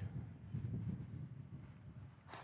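Quiet outdoor background: a low steady rumble with a few faint, short, high chirps.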